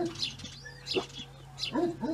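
Small birds chirping, a run of short high chirps repeating every half second or so.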